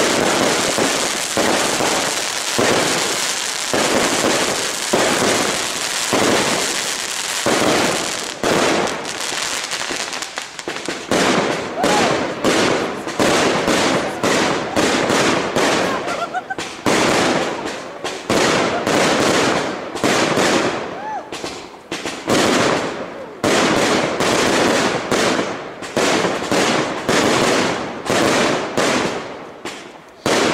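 Aerial fireworks bursting overhead in a continuous barrage: a dense wash of bangs and crackle, then a rapid run of sharp reports, several a second, from about eight seconds in.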